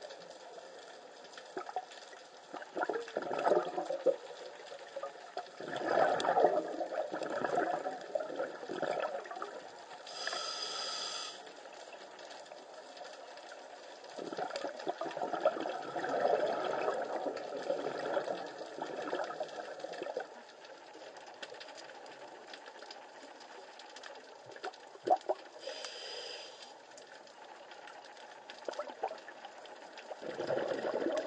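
Scuba diver's breathing through a regulator, heard underwater: long bubbling exhalations in several swells, with a short higher hiss of an inhalation twice between them.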